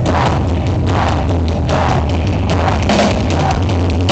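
Live rock band playing loud with electric guitar, bass and drum kit, with no vocals.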